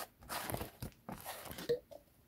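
Black plastic lid being twisted off a speed blender's cup: a few short, rough scraping bursts of plastic rubbing on plastic.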